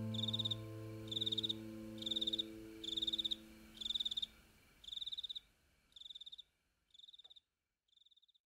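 A cricket chirping steadily, about one trilled chirp a second, growing fainter and stopping just before the end. Under the first half, the last held chord of string music dies away.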